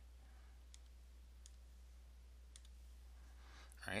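Near silence over a low steady hum, with a few faint clicks about a second apart from computer pointer input while a drawing program's edit menu is used.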